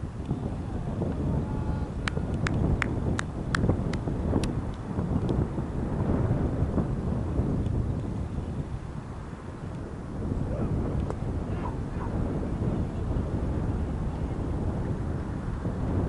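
Wind buffeting the microphone, making a continuous uneven low rumble. About two seconds in comes a quick run of six or seven sharp clicks, roughly three a second.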